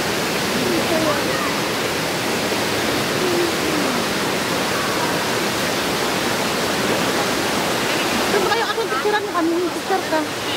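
Steady rush of falling and flowing water from the canyon's small waterfalls and river, with faint voices underneath; talk grows clearer in the last two seconds.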